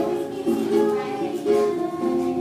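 A woman singing a slow song in held notes, with ukulele accompaniment.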